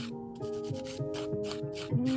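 A hand file's 180-grit side rubbed gently back and forth over a natural fingernail in short strokes, about four a second, buffing the nail's surface to prep it for adhesion of gel extensions.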